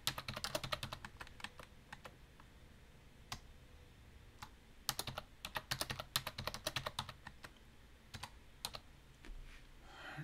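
Typing on a computer keyboard: a quick run of keystrokes in the first second and a half, a few single key presses, then another run from about five to seven seconds in.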